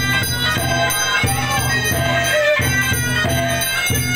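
Suona (Chinese double-reed shawm) playing a reedy, wavering melody, with voices chanting beneath it.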